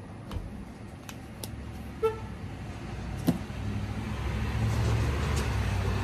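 A car passing by, its engine and tyre noise swelling steadily louder through the second half, with a few faint clicks.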